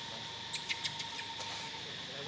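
Steady high-pitched insect buzzing, with about five short, sharp clicks or squeaks between half a second and a second and a half in.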